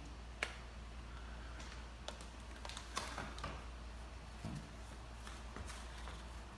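A sharp click of a power plug being pushed into a UPS socket about half a second in, then a few lighter clicks and taps, over a low steady hum.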